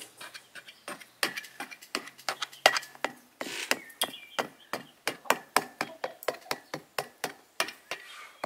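A metal fork pricking pizza dough in a metal baking pan: a quick, uneven run of sharp clicks, about four a second, as the tines go through the dough and strike the pan.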